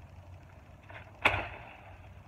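A single sharp chop of a Gerber Gator Kukri machete blade into a shrub branch, a little over a second in.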